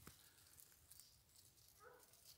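Near silence, with a faint, distant hunting dog baying on a scent trail and light rustling underfoot.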